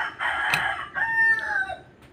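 A loud, drawn-out animal call in several parts; its last part is a clear held note that falls in pitch at the end. A sharp knock comes about half a second in.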